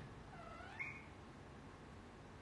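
A cat giving one short, faint meow, rising in pitch, about half a second in.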